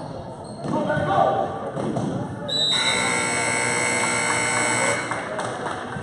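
Basketball gym buzzer sounding one steady, loud tone for about two and a half seconds, starting a little before halfway in and cutting off sharply. Before it, spectators call out and a basketball bounces on the court.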